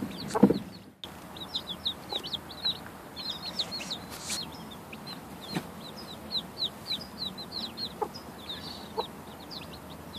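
Day-old chicks peeping steadily: many short, high, falling chirps overlapping throughout. A brief rustling thump comes in the first second, then a few faint clicks.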